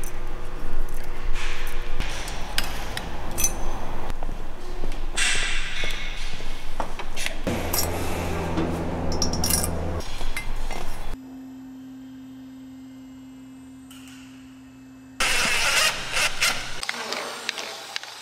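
Small metal parts and hand tools clicking and clinking during hand assembly of an aluminium diesel cylinder head, with valve guide seals and valve springs going in. The sound comes in several short segments, with a much quieter stretch holding a steady hum in the middle.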